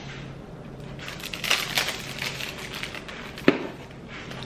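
Crinkling and rustling of a small clear plastic packet of hair-extension tape tabs being handled and peeled, with a sharp click about three and a half seconds in.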